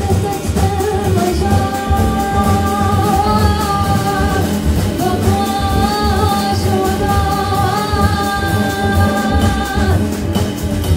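A female vocalist singing long held melodic notes, in two phrases, over a live jazz band of piano, electric guitar, double bass and drum kit.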